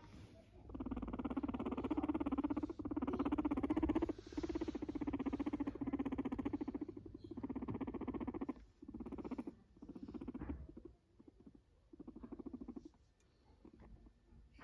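Guinea pig purring in a string of bouts of rapid, low vibrating pulses. The first few bouts last a second or more each; later ones grow shorter and fainter toward the end.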